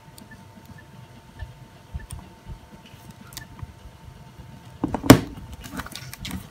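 Faint clicks of a Nokia Communicator being handled, then a short cluster of loud knocks and clacks about five seconds in as the clamshell phone is folded shut.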